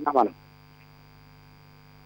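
A steady electrical hum on a telephone line, with the last syllables of a caller's speech ending a moment in.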